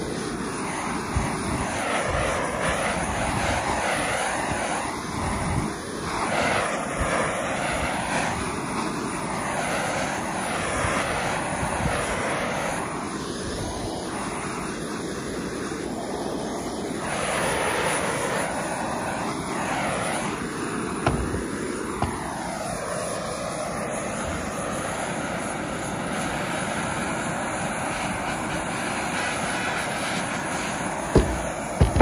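Handheld propane torch burning with a steady hiss as its flame is swept back and forth along a wooden tool handle, charring the wood. The tone rises and falls with each sweep and steadies in the last few seconds.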